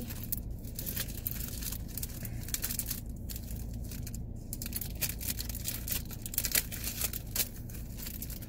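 Clear plastic packaging crinkling as a paper notepad is worked back into it, in many short crackles, over a low steady hum.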